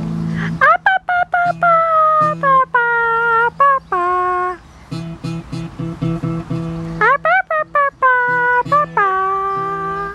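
A high voice singing a wordless tune in two phrases, each swooping up and then stepping down through held notes, over plucked acoustic guitar notes.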